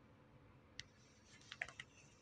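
Near silence broken by light clicks: one about a second in, then a quick run of several clicks near the end.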